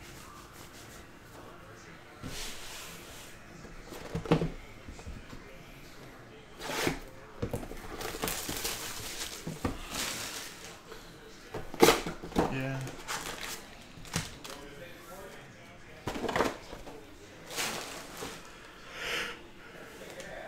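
Hands handling a cardboard trading-card hobby box and a stack of foil-wrapped packs: scattered knocks, scrapes and rustles, with the sharpest knocks about four and twelve seconds in.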